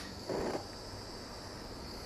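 Small Bernzomatic butane torch freshly lit and burning, its jet flame giving a steady high hiss. There is a brief soft noise about half a second in.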